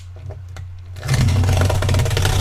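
Hands working the taped seam of a sealed cardboard case, a loud scraping, tearing noise of tape and cardboard starting about a second in.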